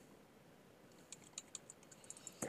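Near silence, with a few faint, short computer clicks from about a second in.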